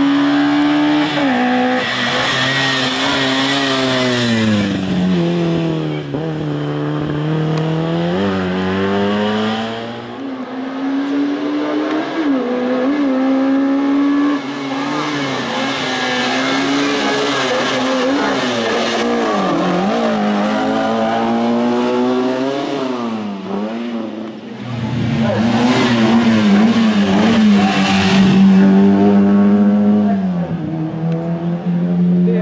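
Hatchback slalom race car's engine revving hard and dropping again and again as it accelerates and brakes through cone chicanes. The sound dips briefly twice, about ten seconds in and again past the three-quarter mark.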